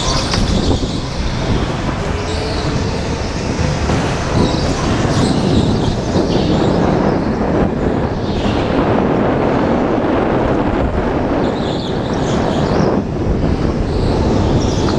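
Go-kart running at racing speed, heard from its own onboard camera: steady, loud motor and tyre noise on the concrete track.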